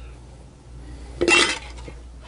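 Faint clinking of utensils against dishes in a kitchen, with a short spoken "So" about a second in.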